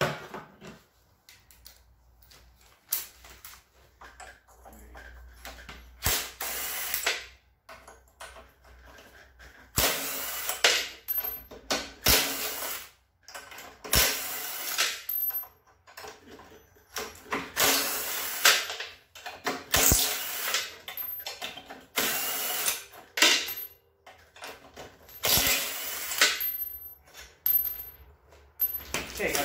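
Cordless impact driver running out the cylinder head bolts of a small lawnmower engine, in about ten short bursts of a second or so each, with sharp clicks in between.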